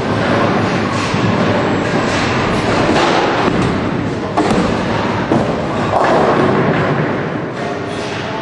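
Bowling alley noise: bowling balls rolling and thudding on the lanes, with two sharp knocks a little under a second apart around the middle.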